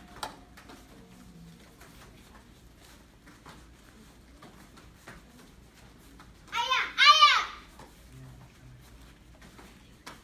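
Young taekwondo students shouting kihap ('Aya!') together, two short rising-and-falling shouts close together about two-thirds of the way in, with quiet room noise before and after.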